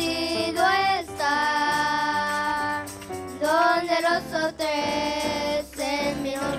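Two young girls singing a worship song together into handheld microphones, holding two long notes, the first about a second in and the second near the end.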